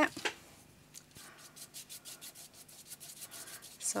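Flat paintbrush stroking gesso onto a card of layered paper in short, quick back-and-forth strokes, several a second.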